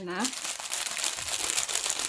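A thin clear plastic bag crinkling continuously in the hands while a small thermal-paper eraser roller is rubbed across a label on it.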